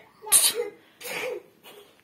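Two short breathy bursts of a person's voice: a sharp one about a third of a second in, a softer one about a second in.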